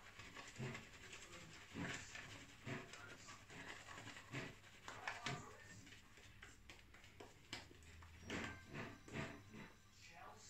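Shaving brush working lather over the cheeks and chin: faint, irregular wet brushing strokes, a few to a second at times.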